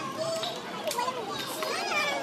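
Many children's voices talking and calling out over one another, a steady crowd babble of kids.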